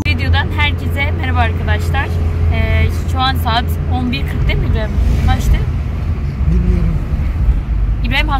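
Steady low rumble of a car in motion, engine and road noise heard from inside the cabin.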